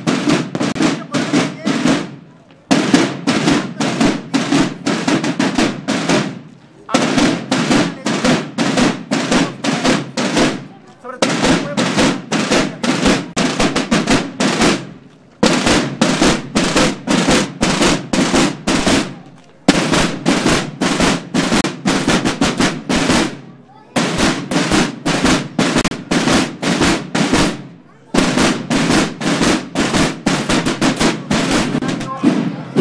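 A marching drum corps playing slung field snare drums, beating a repeated cadence: rapid runs of strokes in phrases about four seconds long, each broken by a brief pause.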